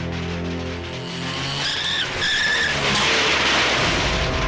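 Film background score with a car's tyres squealing twice, briefly, about halfway through, followed by a rising rush of noise.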